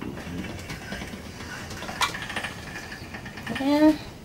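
Hand-cranked pasta machine's steel rollers turning as a sheet of pasta dough is fed through: a low, even mechanical running with faint ticks and a sharp click about two seconds in. A short voice sound comes near the end.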